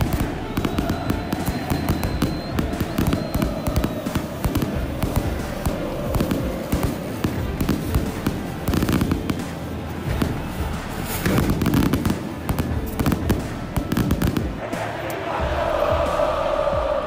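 Stadium pyrotechnics: a dense, irregular string of firecracker bangs and crackles going off continuously, over the steady noise of a crowd.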